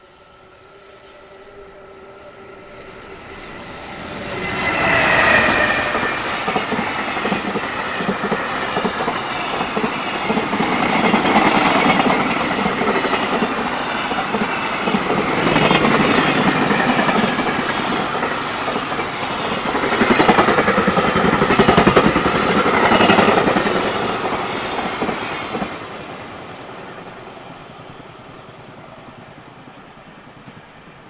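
Electric-hauled container freight train passing close by. Steady tones build as the locomotive approaches over the first few seconds. Then comes loud, rhythmic clatter of the wagons' wheels over the rails for about twenty seconds, fading away as the last wagons go by.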